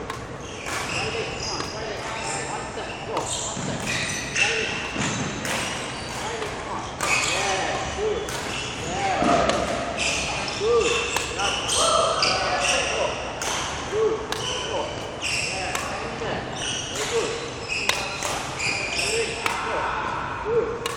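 Badminton rackets striking shuttlecocks back and forth in a fast defensive drill: sharp hits about once or twice a second, echoing in a large sports hall.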